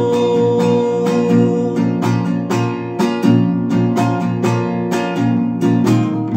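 Nylon-string classical guitar strummed in a steady rhythm, about four strokes a second. A man's long held sung note rings over it and ends about two seconds in.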